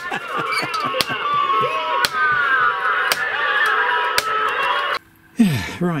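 Lemax Roundup model fairground ride running, its small speaker playing the ride's music while the tilt mechanism clunks about once a second: a broken wire on the fully-up limit switch means the lift never stops at the top. The sound cuts off abruptly near the end.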